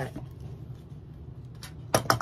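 Rotary cutter rolling through cotton quilt fabric along the edge of an acrylic ruler on a cutting mat, a soft scraping swish. A couple of sharp clicks near the end.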